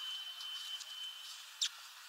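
A redpoll at a seed feeder: a few faint ticks and one sharper short snap about one and a half seconds in. A thin steady high tone runs underneath and stops a little under a second in.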